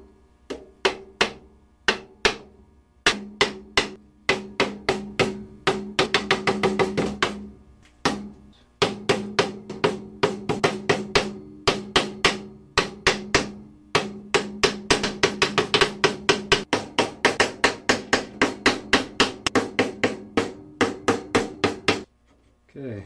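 Small metal hammer tapping fret wire into the slots of a wooden guitar fretboard. A long run of sharp taps, a few at a time at first, then quick runs of several a second with short pauses between. Each tap leaves a short low ring from the neck and bench.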